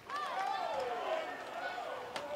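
Faint voices over a low ballpark crowd murmur.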